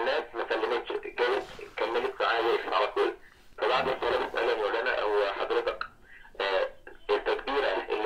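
A caller's voice coming over the telephone line, thin and narrow in tone, talking almost without a break, with two short pauses.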